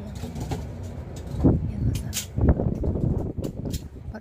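A knife cutting food held in the hand, with the pieces dropped into a plastic colander: irregular kitchen handling noise with two louder low thumps about one and a half and two and a half seconds in, and sharp clicks near the end.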